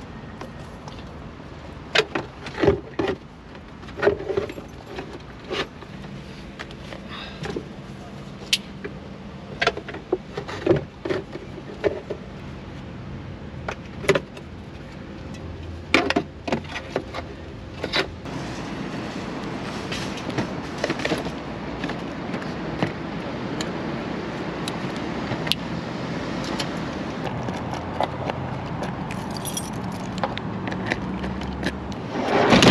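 Irregular clattering, clicks and knocks of items, including a metal gas canister, being handled and stowed under a van's front seat, several sharp strikes in the first half. About two-thirds of the way in the knocks thin out and a steady background noise with a low hum takes over.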